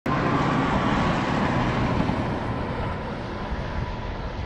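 A road vehicle passing on the highway, a steady rush of tyre and engine noise that eases off in the second half as it moves away.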